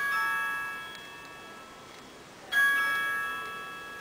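Mobile phone ringtone: a bell-like chime of several tones, sounding twice about two and a half seconds apart, each ring fading out.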